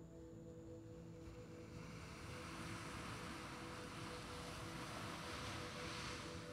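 Soft ambient background music of sustained low tones, with the wash of surf on a sandy shore swelling from about a second in and loudest near the end.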